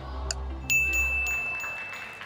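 Game show countdown timer: one last tick in a twice-a-second ticking, then about two-thirds of a second in, a bright sustained chime rings out to signal time is up. It plays over a low electronic music bed that fades out as the chime sounds.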